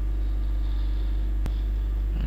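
Steady low electrical hum on the recording line, with a single mouse click about one and a half seconds in.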